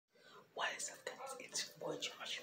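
A person whispering in short breathy phrases.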